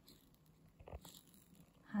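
Near silence: quiet room tone with one faint, brief sound about a second in, and a woman's voice starting at the very end.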